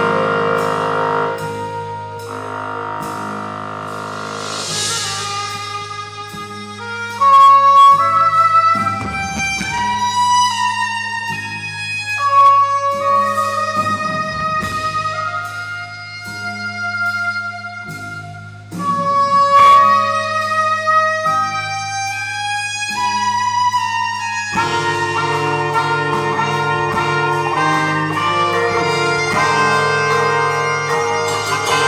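Live band music: a solo horn melody of held notes plays over a sustained low bass note, and the full band comes back in about five seconds before the end.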